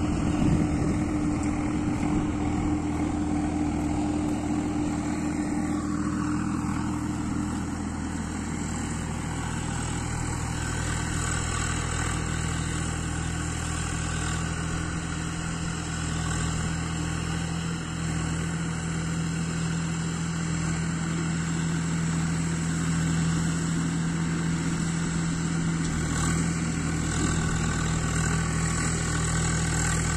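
Swaraj 744 XT tractor's three-cylinder diesel engine running steadily while working a rotavator through the field. The engine note changes about six seconds in, then holds steady.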